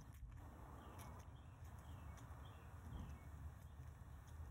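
Near silence, with faint small clicks and scratches from a lock pick working the pins of a worn padlock with an aluminium core.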